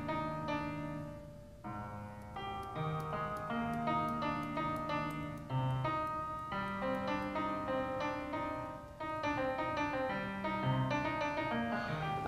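Logic Pro 8's Grand Piano software instrument playing back a MIDI passage of single notes and held chords, with a brief lull about a second and a half in.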